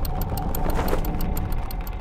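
Chain-and-sprocket mechanism running, a fast steady mechanical ticking of roughly eight to ten clicks a second over a low rumble.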